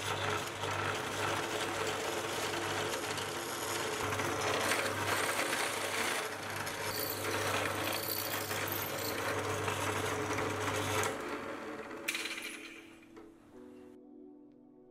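A small milling machine's spindle motor runs with a steady hum as a drill bit bores a cross hole into a metal rod. The machine stops about eleven seconds in.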